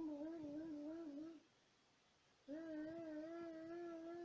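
A young child's voice making two long hummed vocal sounds. The first wavers up and down rapidly and the second is held steadier, about a second apart.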